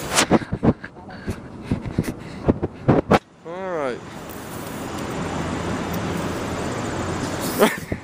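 Handling knocks and rustling on the microphone for about three seconds, a short vocal sound, then a steady rushing noise of road traffic until a knock near the end.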